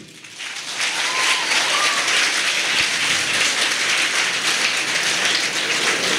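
Audience applauding, a dense patter of clapping that builds up over the first second and then holds steady.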